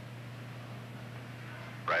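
Steady low hum with faint hiss from the broadcast's air-to-ground audio feed, in a gap between radio calls; a man's voice starts right at the end.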